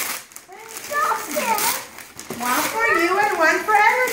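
Young children's voices: high-pitched, excited exclamations and talk that the recogniser could not make into words, after a quieter first second.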